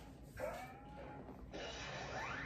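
Faint opening sounds of a music video as it starts playing: a short tone that slides up and levels off about half a second in, then a rising swell from about a second and a half in that leads into the song.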